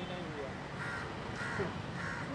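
A bird giving two short harsh calls about half a second apart, over a steady low rumble.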